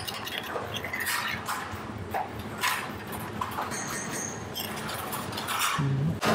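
A metal spoon stirring and scraping in a small stainless-steel saucepan of artichoke cream, with scattered short clinks over steady kitchen background noise.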